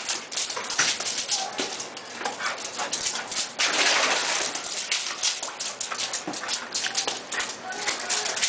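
Pit bulls playing, with whimpers and short yips breaking out now and then.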